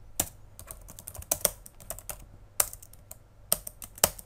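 Typing on a computer keyboard: irregular keystrokes, some in quick runs, with a handful of louder clacks.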